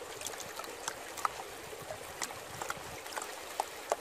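A black plastic gold pan being worked under river water: a steady trickling, swishing wash with scattered small irregular clicks of gravel shifting in the pan as the material is washed down toward the gold.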